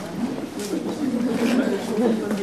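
Low murmur of voices in the audience over a steady low hum, in the pause before the barrel organ starts playing.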